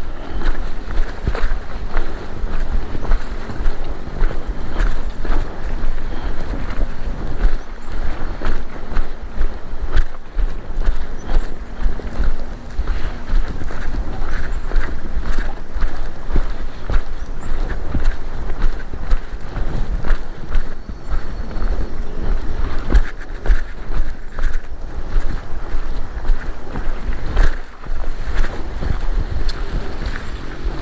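Wind rumbling on the body-worn microphone, with irregular scuffs and rustles of footsteps pushing along a narrow path through tall grass and ferns.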